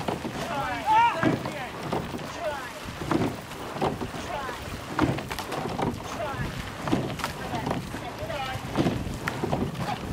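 Raised voices calling out, over wind buffeting the microphone, with short knocks recurring about once a second.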